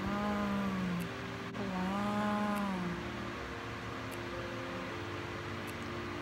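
A woman's voice humming two drawn-out wordless notes, each about a second long, that rise and then fall in pitch. After that only faint steady background tones remain.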